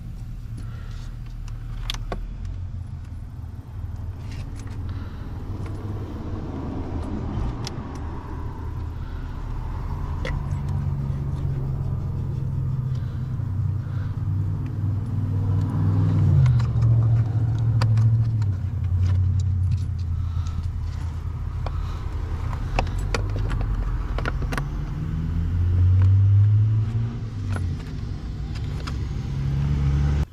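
Small plastic wiring connectors and harness clicking and rattling under the hands, over a low engine drone whose pitch steps up and down and swells loudest about halfway through and again near the end.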